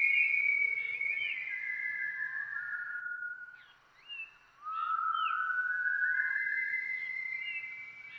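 A high, whistle-like melody of long held notes that step and slide down in pitch and back up again, with short curling chirps between them. It drops away briefly about four seconds in, then comes back.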